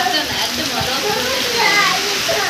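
High-pitched voices calling out and chattering, over a steady hiss of heavy rain and wind.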